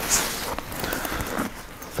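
A fabric backpack being handled: rustling and soft scraping as a pocket is opened.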